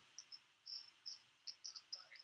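Near silence: faint room tone with brief, faint high-pitched chirps at irregular intervals.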